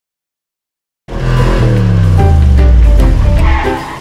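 Silence for about a second, then a loud engine-like sound whose pitch falls steadily, mixed with music, fading near the end.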